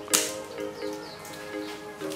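Background music with slow sustained notes. Just after the start comes one sharp crack of a machete striking a dry branch, the loudest sound here, followed by a few faint knocks of wood being handled.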